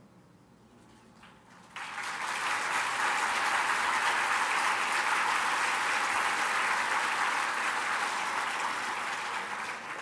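A large audience applauding. It breaks out suddenly about two seconds in, after a moment of near silence, holds steady, and eases slightly near the end.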